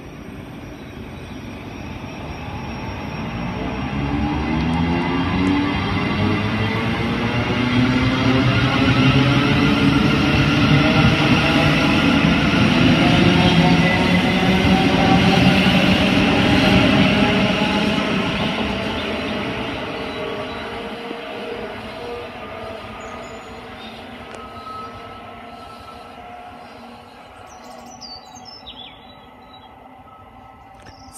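Thameslink Class 700 electric multiple unit running past on the near track: wheels on rail with a whine of several tones rising in pitch. It grows to its loudest about halfway through, then fades away over the last ten seconds.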